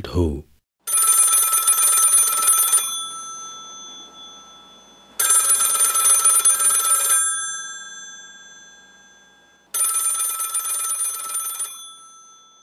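Telephone bell ringing: three rings of about two seconds each, roughly four and a half seconds apart, and the bell goes on sounding and fades after each ring.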